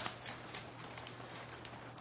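Paper and cardstock handled by hand: light rustles and a few small taps as a layered card is laid down on a grid mat, over a faint steady low hum.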